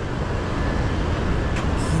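A motor scooter's engine running close by, over steady street traffic noise.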